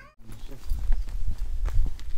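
Wind rumbling on the microphone, with scattered knocks and footsteps as a plastic pet carrier is picked up and carried, starting about half a second in.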